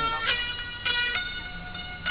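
Harmonium holding a sustained reedy chord, shifting to new notes about a second in.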